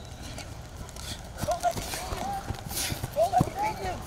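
Footfalls of a group of football players and their coach sprinting across a grass field, an irregular run of thuds building from about a second and a half in. Short shouts from the runners come over the footsteps in the second half.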